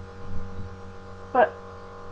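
Steady electrical hum, with a short vocal sound about one and a half seconds in.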